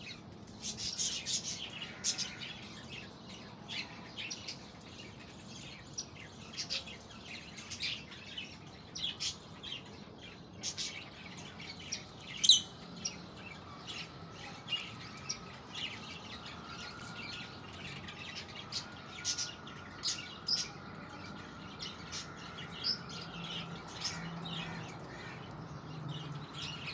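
Birds chirping: many short, high chirps scattered throughout, with one louder call about twelve seconds in.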